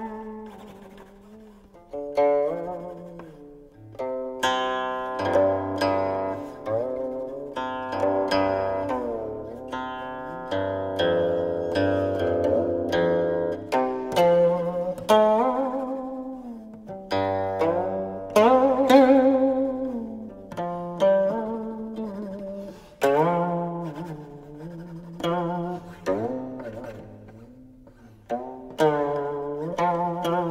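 Solo guqin (seven-string Chinese zither): plucked notes that ring and fade, many slid up or down in pitch along the string while still sounding, over low open-string notes.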